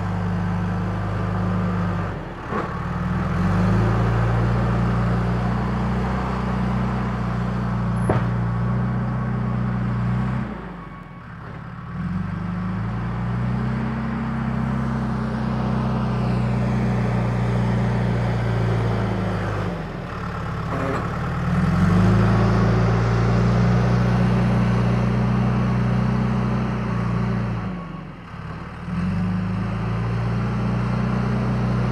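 Diesel engine of a yellow loader tractor working dirt, running loud and steady. Its note sags four times, about every nine seconds, and each time climbs back up in pitch as the machine pushes and backs.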